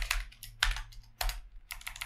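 Typing on a computer keyboard: a run of separate, uneven key presses while writing code, over a faint low hum.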